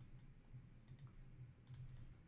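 Near silence with a low steady room hum and a few faint clicks from working a computer, about a second in and again near the end.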